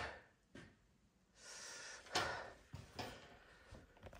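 Faint knocks and rustles of a person moving and climbing down a wooden ladder, with a short hiss like a breath about one and a half seconds in.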